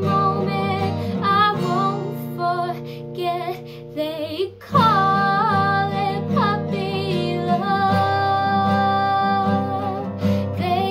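A girl singing with a strummed acoustic guitar, her voice held on long notes with vibrato. The music drops quieter about three seconds in and comes back louder just before the middle.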